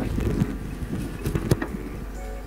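Wind rumbling on a phone microphone on an open dirt pitch, with a few sharp knocks, among them the thud of a football being kicked.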